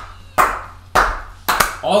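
Slow, spaced hand claps, about four in two seconds, each sharp and brief, with a man's voice starting up near the end.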